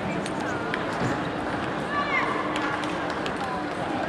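Busy table tennis hall din: a background of many voices, scattered light clicks of celluloid balls from other tables, and a few short shoe squeaks on the sports floor.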